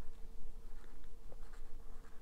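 A felt-tip marker writing on a whiteboard: a run of short strokes as a word is written out by hand, over a faint steady hum.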